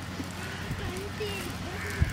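A woman's voice speaking, over a steady low hum.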